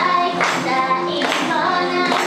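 Female idol group singing an upbeat J-pop song live over backing music.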